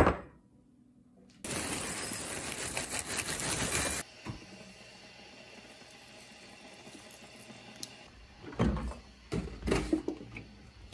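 A ceramic bowl is set down on a counter with a sharp clink. Dry lattice cereal is then poured into it, rattling loudly for about two and a half seconds. Milk follows, poured from a plastic jug with a much quieter, steady pouring sound, and a few knocks come near the end.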